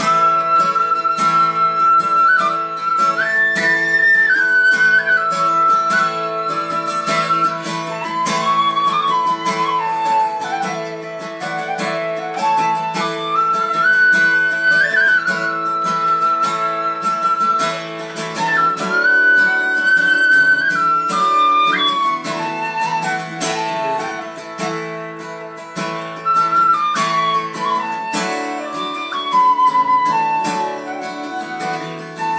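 Tin whistle playing a Celtic folk melody of long held notes and short stepwise runs over steadily strummed acoustic guitar: an instrumental break in the song.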